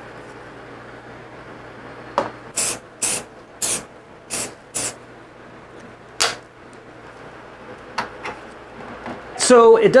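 Black plastic hose adapter being pushed and twisted into the end of a corrugated dust-collection hose: a run of about seven short scraping rubs of plastic on plastic, between about two and six seconds in, with one more a little later.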